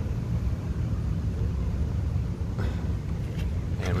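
Steady low rumble of outdoor background noise with no clear events.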